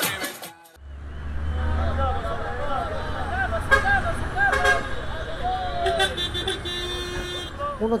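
Salsa music cuts off under a second in, giving way to the inside of a passenger minibus: a low engine rumble with voices over it, and a horn toot near the end.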